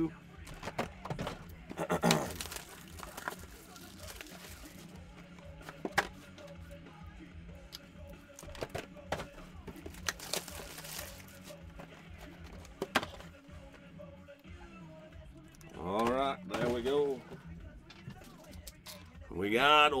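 A cardboard hobby box of baseball cards being handled and opened, with scattered clicks, taps and rustles of cardboard and foil-wrapped packs. Quiet background music plays underneath.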